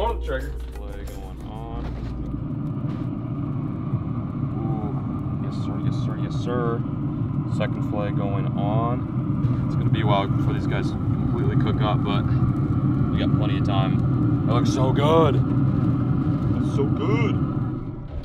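A steady low mechanical hum, with indistinct voices talking now and then over it.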